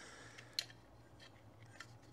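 Faint handling of two metal toy cap-gun revolvers held together, with a light click a little past half a second in and a fainter tick near the end.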